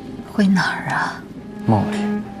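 A voice speaking two short phrases, the first about half a second in and the second near the end, over quiet background music.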